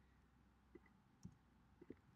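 Near silence broken by about four faint computer keyboard keystrokes, scattered through the second.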